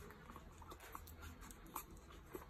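Newborn puppies nursing, giving faint, short squeaks several times, with soft suckling clicks.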